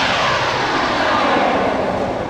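A jet-like whoosh sound effect that sweeps down in pitch and slowly fades away.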